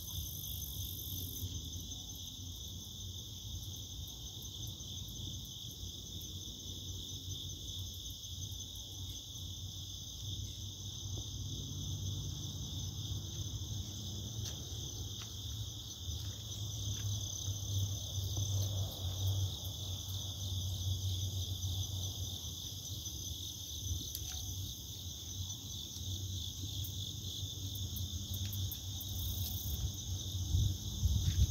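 Steady insect chorus, a continuous high-pitched chirring in several layered pitches, over a low rumble that grows louder around the middle.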